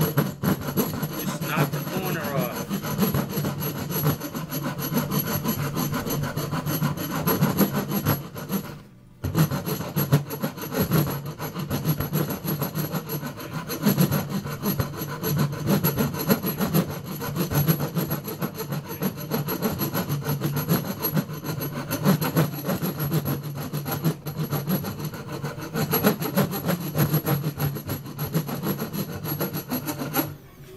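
Hand rasp filing the corners off a roughly cut briar wood pipe block clamped in a vise: a continuous run of rough rasping strokes on the wood, with one short pause about nine seconds in.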